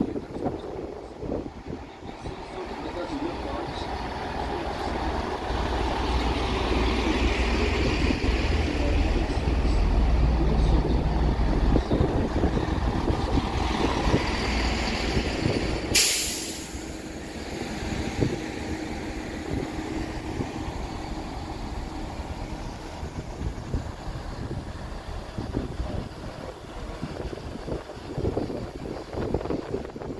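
GWR Class 165 diesel multiple unit arriving at a platform: the low rumble of its underfloor diesel engines and wheels grows louder over the first dozen seconds as it runs in and slows. About halfway through comes a short, loud hiss of air from the brakes, after which the train stands with its engines running more quietly.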